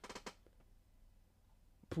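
Near silence: quiet room tone between a man's remarks, with the start of a spoken word right at the end.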